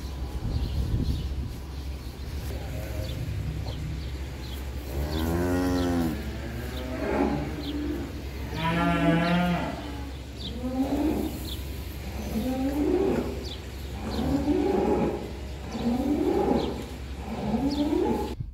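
Holstein dairy cattle mooing repeatedly: a long moo about five seconds in, another near nine seconds, then a run of shorter moos about every second and a half, over a steady low hum.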